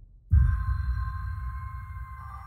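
Background music coming in: a deep bass hit about a third of a second in, with a steady high chord held over it as the bass fades.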